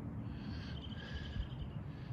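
Steady low outdoor background noise with a faint, high, rapidly pulsed chirp lasting about a second near the middle.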